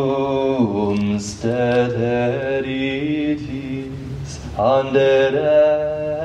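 Unaccompanied liturgical chant: voices sing long, held notes that step between pitches. There is a short break about a second and a half in, and a new phrase begins a little after four and a half seconds.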